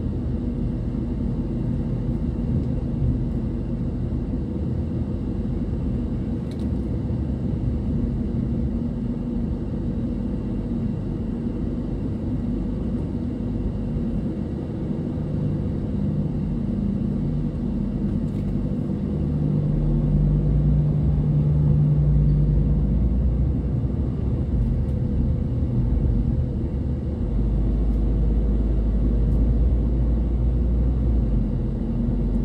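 Steady low rumble of a car's engine and tyres heard from inside the cabin, growing somewhat louder in the second half as the car pulls away through the toll plaza and up the ramp.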